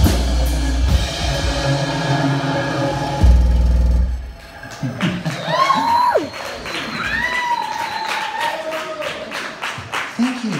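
A live song with drum kit and vocals playing its last bars, ending about four seconds in on a final loud hit. After that come voices whooping and calling out in sliding pitches, with light clapping.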